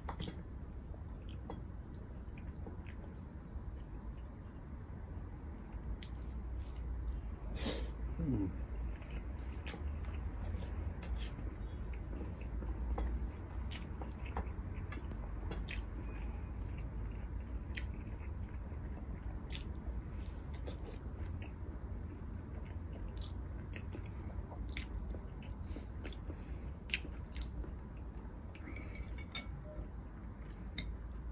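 Close-miked chewing of a man eating rice and soup with his hands, with scattered short mouth clicks and smacks throughout. A low steady hum runs underneath.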